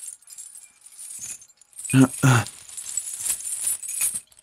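Metal chains jangling and rattling as they are worked loose, heard as a continuous metallic clinking that grows busier from about two seconds in. Two short pained grunts from a man's voice come close together at about the same point.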